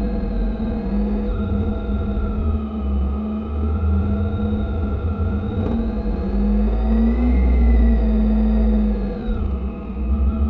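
Motorcycle engine running at low road speed under heavy wind and road rumble on a bike-mounted camera microphone. Its pitch rises for a while and then drops near the end as the bike slows.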